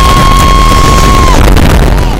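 Loud, heavily distorted and clipped noise with a steady high-pitched ringing tone that cuts off about one and a half seconds in. It is an edited disaster sound effect, the ringing standing for deafened ears after a blast.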